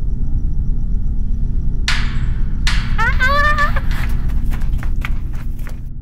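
Eerie horror-style sound effects: a steady low rumbling drone with two sudden whooshes, then a wavering wail like a voice about three seconds in, followed by scattered clicks.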